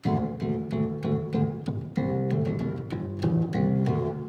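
Electric bass guitar slapped with the thumb in traditional funk style: a quick run of sharp, percussive notes that starts abruptly.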